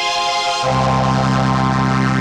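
Behringer Solina string synthesizer playing sustained, chorused string-ensemble chords through an OTO Machines BOUM; about two-thirds of a second in the chord changes and low bass notes come in.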